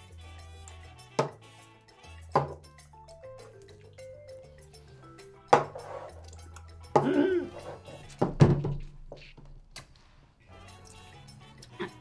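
Background music with a steady bass line, broken by four sharp knocks of glass on a table as empty shot glasses are set down, and a short grunting vocal reaction about seven seconds in.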